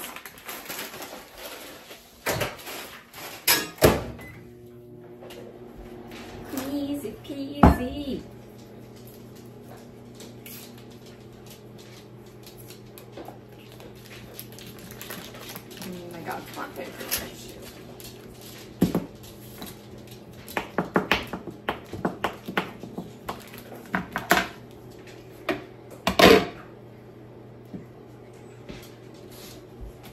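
Microwave oven running with a steady hum that starts about four seconds in, over intermittent sharp knocks and clatter of kitchen dishes on a counter.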